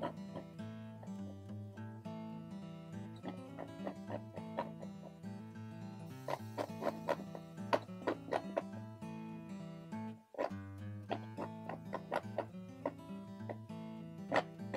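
Quiet background music of plucked acoustic guitar notes, with a short break about ten seconds in.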